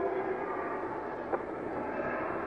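Steady hiss of an old recording's background noise in a pause between spoken phrases, with one faint click about 1.3 seconds in.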